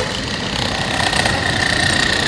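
A steady engine-like running sound with a constant high whine over a low rumble.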